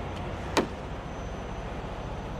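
Steady low engine hum in the background, with one short, sharp sound about half a second in that drops quickly in pitch.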